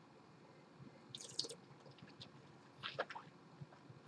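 Faint sipping of white wine from a wine glass: two short slurps, one about a second in and one near three seconds, as air is drawn through the wine in the mouth to taste it.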